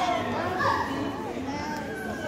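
Indistinct chatter and calls of children's voices overlapping in a sports hall, with no single clear speaker.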